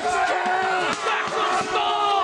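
A group of men yelling a long, sustained battle cry as they charge with shields and spears, several voices overlapping.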